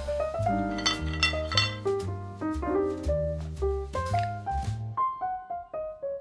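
Background music: a keyboard melody over a bass line with light percussion. The bass drops out about five seconds in, leaving only the melody notes.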